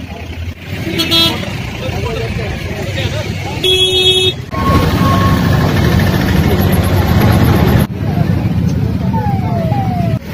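Roadside traffic noise with crowd voices. A vehicle horn toots briefly about a second in and sounds again, longer, near four seconds in. A vehicle engine runs loudly through the middle seconds.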